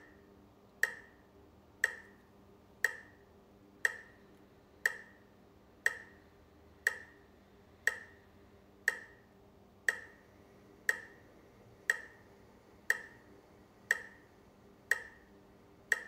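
Metronome clicking steadily about once a second with a sharp tick, pacing a slow breathing exercise at five or six clicks per inhale or exhale.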